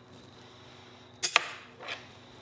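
Metal cutlery clinking as pieces are dried with a tea towel and set down: two sharp clinks in quick succession just past the middle, then a softer one near the end.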